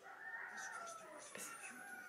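A faint, drawn-out animal call whose pitch slowly falls, lasting through the pause.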